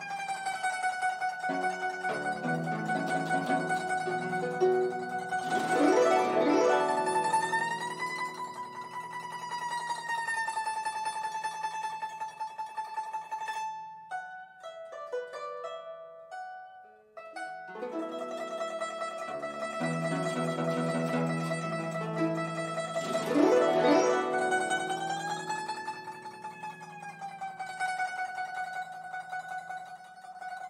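Guzheng played solo: long held melody notes high up that bend upward and back in pitch, over lower plucked notes, with a sweeping glissando across the strings. After a sparse, quieter passage in the middle, the same phrase returns with a second glissando.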